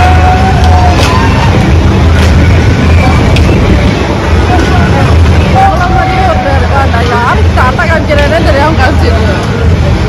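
Steady low drone of fairground ride machinery, with people's voices and chatter over it.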